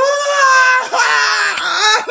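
A man's long, high-pitched falsetto wail of laughter: a drawn-out cry that swoops up at the start, breaks briefly about a second in, then carries on in a second held cry.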